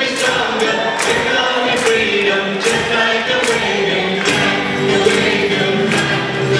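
Live band playing a song: several voices singing together over acoustic guitars, with hand drums keeping a steady beat.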